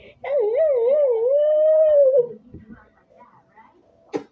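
A long howl-like voice, about two seconds: its pitch wobbles up and down three times, then holds level before falling away.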